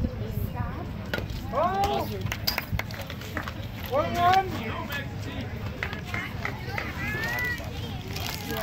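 High-pitched voices shouting across a youth baseball field, with two loud calls about a second and a half and four seconds in and a fainter one near the end, over steady outdoor background noise.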